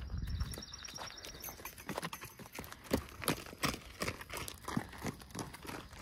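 Horses' hooves clip-clopping, a string of irregular hoof strikes as several horses move along.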